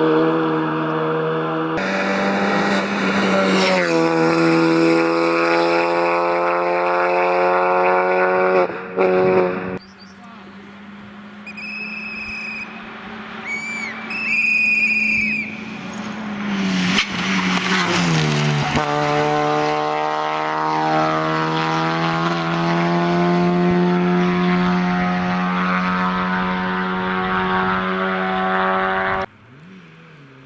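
Citroen C2 VTS rally car's four-cylinder petrol engine run hard at high revs, the note holding high then dropping at gear changes and climbing again as the car is driven flat out. The sound comes in several separate passes, with a quieter stretch near the middle.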